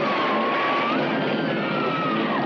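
Eerie electronic horror-film score: thin, wavering tones slide slowly up and down over a dense, rushing wash of noise at a steady level.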